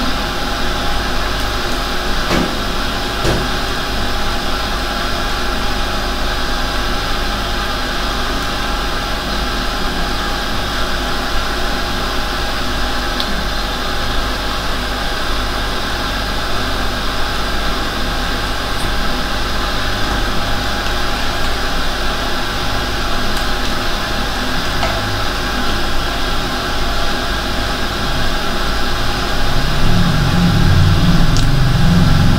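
A loud, steady hum and hiss that never changes, with a couple of faint clicks about two to three seconds in.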